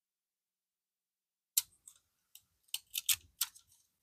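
Paper handling: a handful of short, crisp crackles of paper and parchment paper as journal pages are lifted and a parchment strip is peeled away, starting about a second and a half in.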